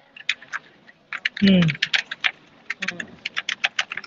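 Typing on a computer keyboard: a fast, uneven run of key clicks.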